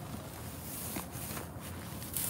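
Rustling of dry brush and branches with footsteps, with a few light crunches.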